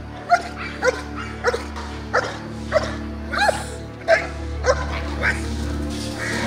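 Belgian Malinois barking in an even rhythm, a sharp bark about every 0.6 seconds, nine in all, while lunging at a bite pillow. Background music plays under the barks.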